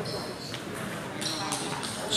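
Background chatter in a large gymnasium hall, with a few short high-pitched squeaks and faint clicks over it.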